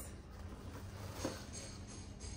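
Faint rustling and crinkling of plastic packaging as a bubble-wrapped item is lifted out of a cardboard box, over a low steady hum.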